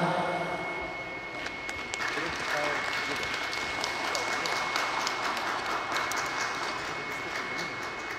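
The dance music ends at the very start, then scattered applause from a small audience begins about a second and a half in and keeps going at a steady level, applause at the end of a skating programme. A faint steady high tone runs underneath.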